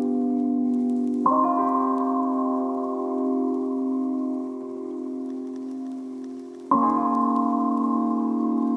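Background music of slow, sustained chords that change about a second in and again near the end.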